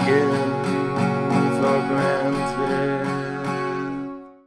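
Acoustic guitar strummed in a steady rhythm through the closing bars of a song, with a sung note trailing off near the start.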